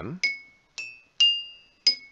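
Ceramic coffee mugs and a drinking glass tapped one after another, four taps, each giving a clear, distinct ringing note that dies away. The notes alternate between a lower and a higher pitch. Each object rings at its own single frequency and loses energy only slowly: it is lightly damped.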